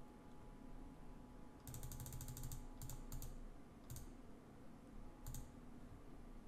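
Computer keyboard keystrokes: a quick run of taps about two seconds in, then a few separate presses, as a number is typed into an order-entry field.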